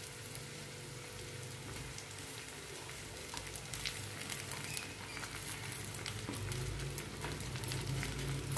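Gongura (roselle) leaves frying in oil in a metal kadai: a steady light sizzle with scattered small crackles, growing slowly louder.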